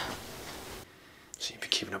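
Faint room hiss, then a man's voice speaking softly, almost in a whisper, in the last half second.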